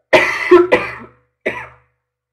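A woman coughing three times: two coughs close together, then a third, shorter one about a second later.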